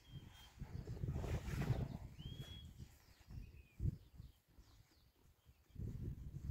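Rustling of large squash leaves as a patty pan squash is picked, over a low rumble, with a few short, high bird chirps. A soft thump comes just before four seconds.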